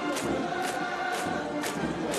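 Massed voices singing held chords, parade music with a steady beat of sharp strikes about twice a second.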